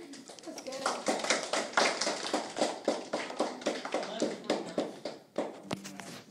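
A small group of people clapping, starting about a second in and dying away near the end, with voices mixed in.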